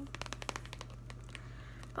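Fingers scratching and crinkling the plastic wrap of a packaged canvas panel: a quick run of crackles in the first half second, then scattered ones that thin out.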